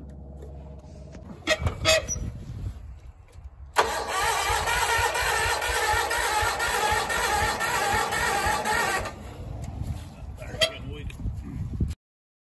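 Wheel Horse garden tractor's engine being cranked over without catching: a low, rhythmic churning. A loud rushing hiss joins it about four seconds in and cuts off suddenly about five seconds later.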